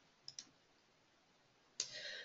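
Near silence, with two faint clicks in quick succession about a third of a second in and a short faint sound near the end.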